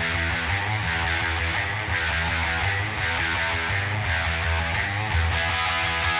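Rock music: an instrumental passage of the song, with guitar, playing steadily with no singing.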